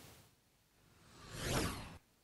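A short whoosh transition sound effect in the second half: a rushing swell that builds and fades over under a second, after about a second of near silence.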